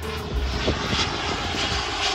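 Gulfstream G650ER business jet on final approach, its twin Rolls-Royce BR725 turbofans giving a steady rushing jet roar with a low rumble, briefly louder in the hiss about a second in.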